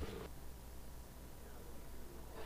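Quiet room tone: a low steady hum through the room's sound system, with a brief faint sound right at the start.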